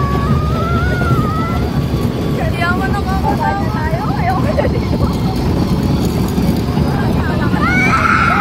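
Wind rushing over a phone microphone on a moving amusement ride, with riders' drawn-out voices calling out and a child shrieking just before the end.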